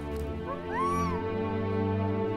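Dramatic background music of long held chords, with a short, high cry about half a second in that rises and then falls in pitch, lasting under a second.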